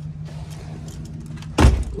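Steady low hum of a motor vehicle with a soft rushing hiss; a man's voice starts again near the end.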